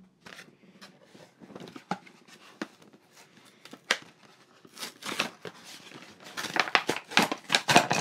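Cardboard window box and plastic tray of an action-figure package being opened by hand: scattered crackles and clicks as the end flap is worked open and the insert is slid out. They grow busier and louder over the last two seconds.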